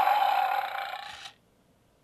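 Recorded roar sound effect from the Bandai Legacy Saba toy saber, played through the toy's electronics when the left button on Saba's head is pressed. One rough roar that fades out about a second and a half in.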